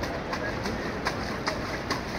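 Faint voices over steady outdoor background noise, with a few sharp light clicks about every half second.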